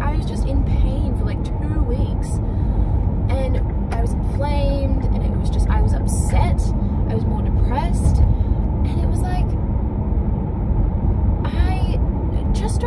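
Steady low road and engine rumble inside a moving car's cabin, with a woman's voice faintly over it at times.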